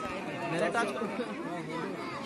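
Crowd of spectators chattering, many voices overlapping with no single voice standing out.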